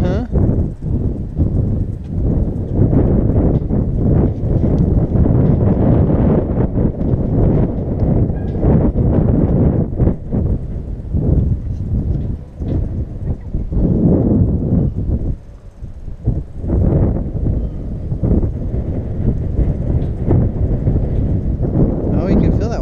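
Gusty wind rumbling on the microphone, easing briefly about fifteen seconds in, over a horse eating feed from a plastic bucket hung on a metal pasture fence.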